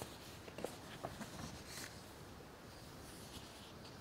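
Faint paper rustling and a few soft clicks, with quiet room tone behind them.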